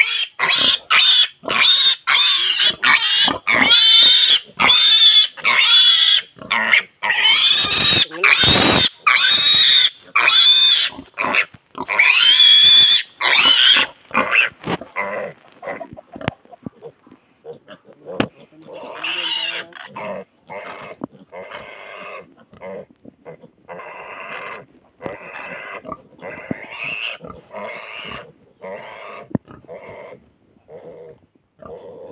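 Pigs squealing loudly and repeatedly in shrill, rapid cries for roughly the first half. After that come quieter, shorter calls at about one a second.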